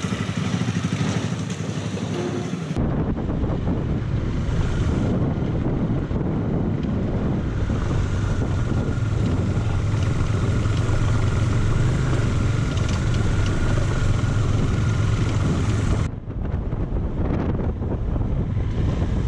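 KTM Duke 390's single-cylinder engine running at low road speed, with wind buffeting the microphone. The sound changes abruptly about three seconds in and again near the end.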